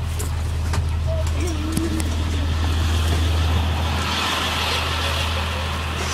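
Bus engine running with a steady low rumble, and a few faint voices over it in the first two seconds.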